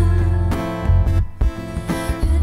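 Live looped instrumental music: a strummed acoustic guitar over a strong, pulsing bass, built up on a loop station.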